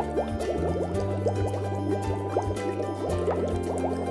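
Background music with a steady bass line, over many small water drips and plinks in a shallow inflatable paddling pool.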